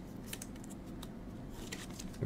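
Faint card-handling noise: a few light ticks and soft rustles as a glossy trading card is slid out of a thin plastic sleeve and handled.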